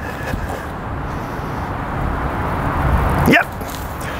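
Steady outdoor background noise with a low rumble, swelling slightly. A single brief rising vocal call cuts through about three seconds in.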